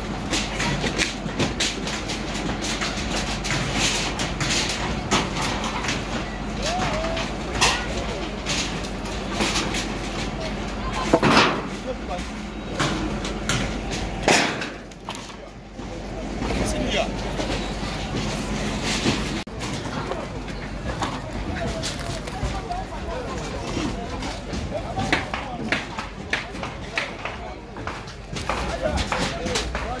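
People's voices talking against busy outdoor background noise, with scattered knocks and bangs throughout and two louder bangs near the middle.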